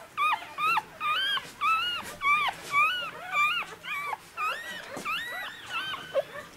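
A day-old miniature pinscher puppy crying: a fast run of short, high-pitched squeals, about three a second, each rising and then dropping.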